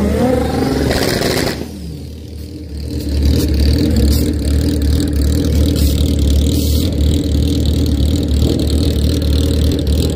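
A sport motorcycle's engine revving, rising in pitch, breaks off abruptly about a second and a half in. After a short lull, a motorcycle engine runs steadily at a low idle with a throbbing low note.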